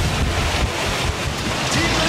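A steady, loud rushing noise with no clear pitch, spread evenly from low to high.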